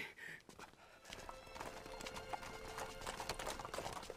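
Many horses' hooves clopping on hard ground, a dense run of hoofbeats that starts about a second in and grows busier, with soft background music underneath.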